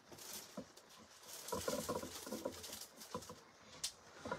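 Light rustling, scratching and small clicks of craft supplies being handled and moved about on a work table, busiest in the middle, with a sharper click near the end.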